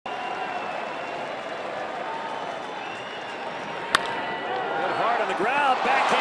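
Ballpark crowd murmuring, then a single sharp crack of the bat about four seconds in as a 103 mph fastball is hit. The crowd then grows louder, with shouts.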